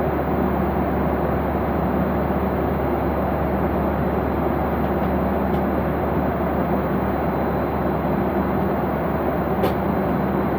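Steady cabin noise of an airliner in cruise flight: an even rush of engines and airflow heard from a window seat. A short sharp click near the end, and a fainter one midway.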